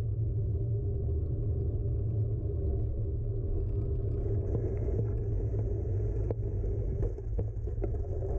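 Steady low rumble of wind buffeting a handlebar-mounted camera's microphone while a bicycle rolls over asphalt, with tyre noise underneath. A few sharp knocks come near the end as the bike jolts over bumps.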